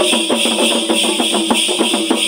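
Folk dance percussion: drums beating a fast, driving rhythm with the jingle of the dancers' large ankle bells (perunchalangai) over it.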